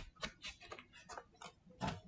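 Computer keyboard keystrokes: a faint, irregular run of about eight sharp clicks.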